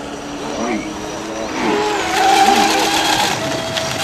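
Fast-electric RC rigger hydroplane running flat out on open water: a steady high motor whine with the hiss of spray, which swells about a second and a half in as the boat comes closer.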